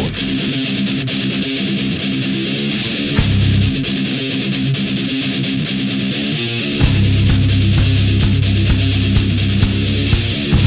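Instrumental passage of a heavy metal song: electric guitar riff over steady, evenly spaced cymbal hits, with no vocals. The full, heavy low end of bass and drums comes back in about seven seconds in.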